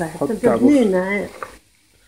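A person's voice for about a second and a half, with a wavering pitch, then it stops and near silence follows.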